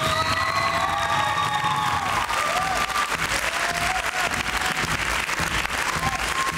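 Audience applauding and cheering, steady clapping with long drawn-out whoops over it.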